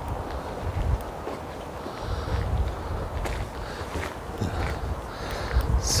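Footsteps on a gravel path, with wind buffeting the microphone.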